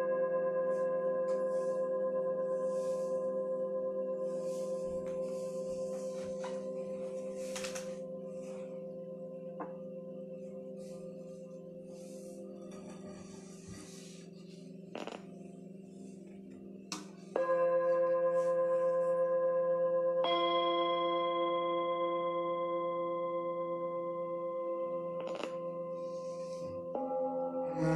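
Bell-like ringing tones that fade slowly. There is a fresh strike about 17 seconds in, and a higher ringing tone joins about three seconds later. A few faint clicks sound over them.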